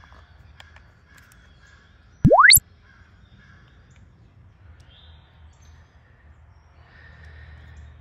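A loud, quick electronic tone sweeping upward from very low to very high pitch in about a third of a second, about two seconds in, over a faint woodland background with distant bird calls.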